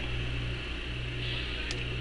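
Steady low electrical or mechanical hum with a steady hiss over it: room background, with one faint click near the end.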